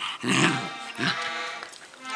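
Small Löwchen dog play-growling at a plush toy, in two short rough bursts: one just after the start and a shorter one about a second in.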